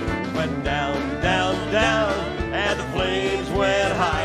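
Live country band music: acoustic and electric guitars with a steady drum beat under a wavering lead melody.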